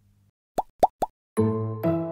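Three quick bloop sound effects, each a short upward pitch sweep, then about two-thirds of the way in a short musical intro jingle starts with several pitched notes.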